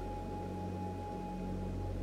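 Soft, steady drone of ambient meditation background music: sustained low tones, with a thin higher tone that fades out a little past halfway.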